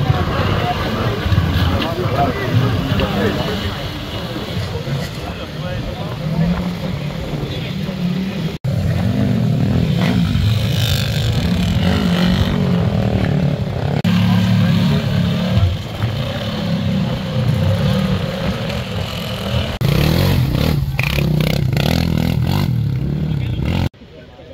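Side-by-side UTV engines revving unevenly as they work through deep mud, the engine note rising and falling.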